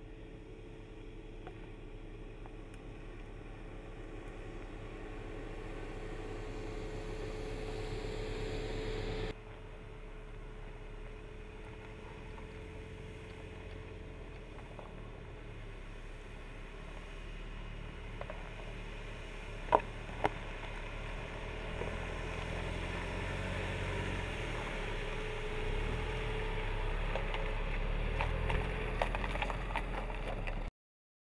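Jeep Renegade's engine running at low speed as it crawls over rock, growing louder as it approaches, then cutting off abruptly about a third of the way in. It swells again toward the end, with two sharp knocks about two-thirds of the way through.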